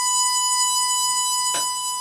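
Harmonica holding one long, steady high note, with a short breathy rush about one and a half seconds in.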